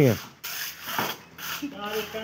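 Clay bricks scraping and knocking against each other as they are lifted off a stack, with a couple of sharp knocks.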